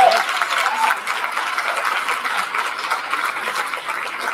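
Audience applauding, with a couple of voices cheering in the first second.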